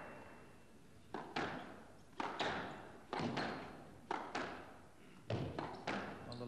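Squash rally: the teleball struck by rackets and smacking off the court walls, sharp impacts in quick pairs about once a second. Crowd applause dies away at the start.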